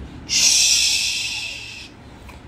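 A man's drawn-out hissing 'sss' made with the mouth, imitating the sizzle of hot tempering being poured over the dish. It lasts about a second and a half and fades away.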